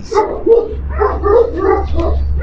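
A dog barking in a quick run of short barks, about three or four a second, with a low rumble under it from about a third of the way in.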